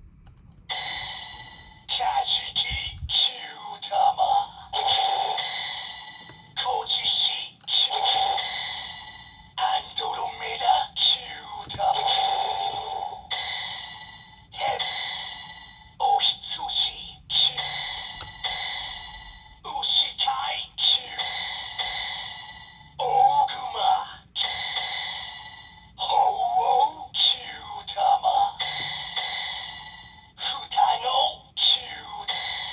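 Seiza Blaster toy's speaker playing a rapid string of short electronic voice calls and sound-effect jingles, one after another with brief gaps. Toothpicks are pressing the Kyutama reader pins by hand to trigger different Kyutama sounds.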